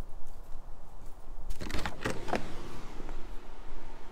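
A door latch clicking and a door opening with a few knocks about halfway through, over a steady low rumble of wind on the microphone.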